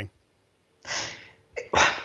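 A short, breathy sharp breath from a man, about a second in, and then he starts to speak near the end.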